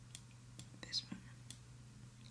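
Faint whispered breath from a person close to the microphone about a second in, with a few small clicks, over a low steady hum.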